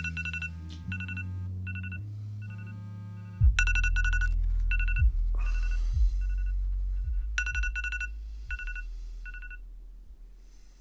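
iPhone alarm ringing: groups of high electronic beeps repeat over and over, then stop just before the end when the alarm is snoozed. Low bass sounds underneath throughout.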